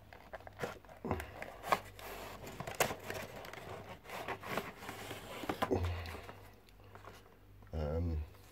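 A clear plastic tray and its cardboard box being handled: crinkling of the plastic and scraping of card, with scattered light clicks as the tray is slid out of the box.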